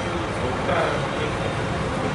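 Steady low rumble of a coach bus's diesel engine idling.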